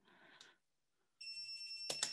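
Snap Circuits horn beeping a steady high tone that starts about a second in, with a click near the end. It is wired in place of a blinking LED on an Arduino pin, and its beep is the sign that the output has come on.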